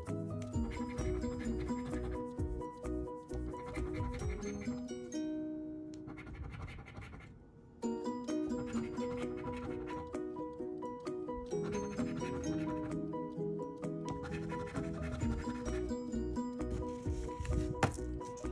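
Background music with a steady beat, with a coin scratching the coating off a scratch-off lottery ticket in quick short strokes. The music thins out for a few seconds around the middle and comes back in suddenly.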